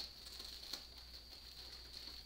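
Faint handling sounds of a belt being pulled around a dress form and fastened: light rustling with a few soft clicks.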